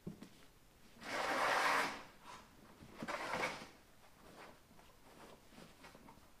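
A sewn dress being pulled and adjusted on a dress form: two bursts of fabric rustling, the louder about a second in and lasting nearly a second, the second shorter about three seconds in, with small rustles between.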